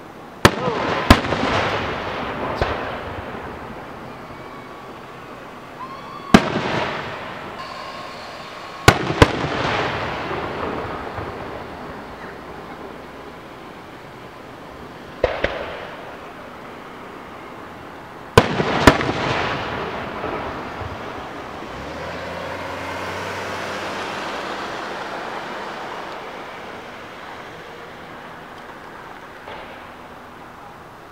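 Aerial firework shells bursting: about nine sharp bangs, several in close pairs, each followed by a long echoing decay. A softer swell of noise rises and falls in the last third.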